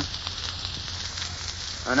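Steady hiss and faint crackle with a low hum: the surface noise of an old 1930s radio transcription recording, with a few faint ticks.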